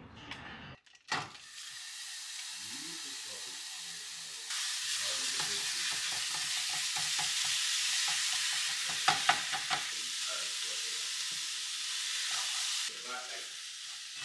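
Ground beef sizzling in a nonstick frying pan while a slotted spatula stirs and breaks it up, scraping and tapping against the pan. The sizzle grows louder about four seconds in, and a few sharp spatula taps stand out near the middle.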